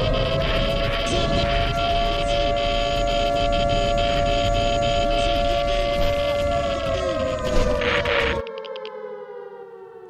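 Civil-defense air-raid siren holding a steady wail, then slowly winding down in pitch over the last few seconds. It sits over a dense rumbling noise full of crackles, which cuts off abruptly about eight and a half seconds in, leaving the siren winding down alone.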